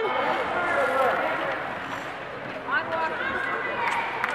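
Faint, distant voices calling out, twice, over steady background noise from the rink.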